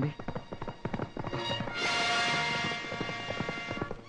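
Horse hooves clip-clopping in quick succession as the horse pulls a two-wheeled cart. A loud swell of film-score music joins about two seconds in.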